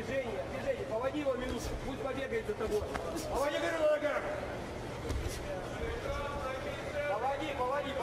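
Voices shouting in a boxing arena during a round, with a few sharp smacks of gloves landing.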